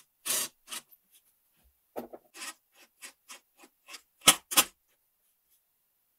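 Cordless driver turning a brass threaded insert into plywood in a series of short bursts, each a brief rasping grind as the insert threads cut into the wood. The last two bursts are the loudest.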